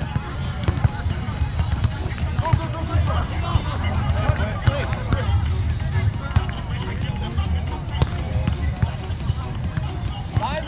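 Beach volleyball rally with distant voices and music from around the beach over a heavy low rumble, and one sharp smack of a hand hitting the ball about eight seconds in.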